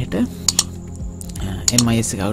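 Clicking at a computer while drawing on a digital whiteboard: two pairs of sharp clicks about a second apart.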